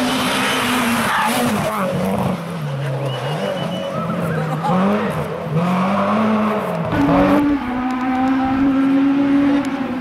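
Rally car engines at full attack on a stage, Renault Clios among them: the engine note rises and falls again and again with gear changes and lifts through the bends, with tyre noise on the road. Just after seven seconds the sound switches to another car holding a steadier, high-revving note.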